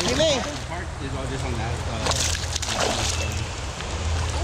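A hooked smallmouth bass splashing at the surface of a river while being played on a rod, with sudden splashes about two and three seconds in, over a steady low rush of moving water.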